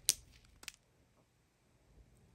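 Two short plastic clicks as a strip of small zip-top bags of diamond-painting drills is handled, the second fainter and about half a second after the first.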